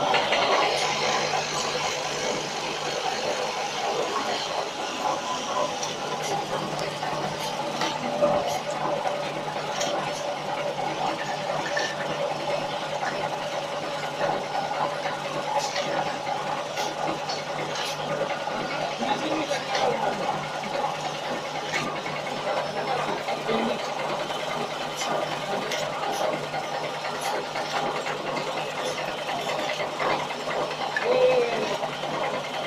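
Automatic turntable bottle filling and capping machine running: a steady mechanical whirr over a low hum, with scattered faint clicks from the rotary table and capping head.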